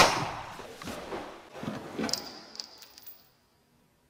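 The echoing tail of a gunshot dies away, followed by a few dull thuds and then light metallic tinks of a spent brass cartridge case bouncing and ringing on a wooden floor.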